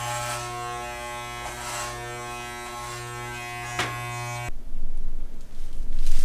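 Corded electric hair clippers running with a steady buzz as they cut hair, with a few short brighter swishes as the blade goes through it; the buzz cuts off suddenly about four and a half seconds in. A louder, irregular rustling noise follows.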